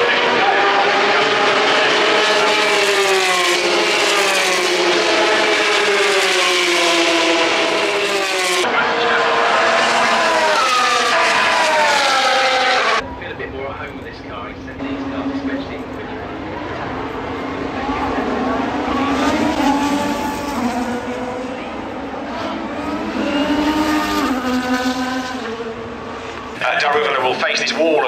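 Open-wheel racing cars passing at high revs down the start-finish straight, the pitch of each engine sweeping up and down as it goes by. About halfway through, the sound cuts abruptly to a quieter stretch with more cars passing.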